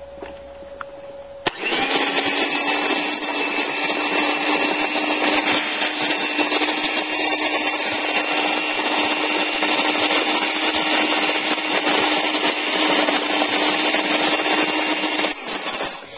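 Small, cheap electric hand mixer switched on about a second and a half in, running very loud and steady with a constant hum as its beaters whip shea butter and oils in a bowl, then cutting off near the end.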